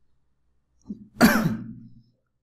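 A man clears his throat once, about a second in.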